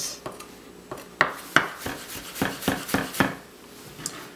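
Chef's knife dicing ginger slivers on a plastic cutting board: a series of irregular knocks of the blade hitting the board, roughly two to three a second, the loudest a little over a second in.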